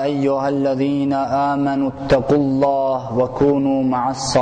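A man's voice reciting Quranic Arabic in a melodic chant. He holds long notes at a steady pitch, with brief breaks between phrases.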